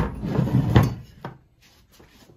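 Workshop handling sounds: a heavy knock at the start, then about a second of scraping and clattering as a cast-metal water-pump part is shifted on a metal workbench, ending in two lighter knocks.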